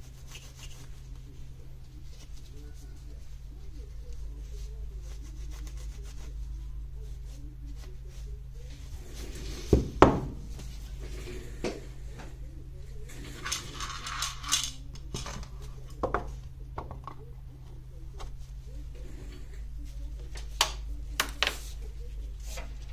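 Handling noise of a Milwaukee M18 battery's cell pack: two sharp knocks about ten seconds in as it is set down on the bench, then scraping and scattered clicks as it is fitted into its plastic housing, over a steady low hum.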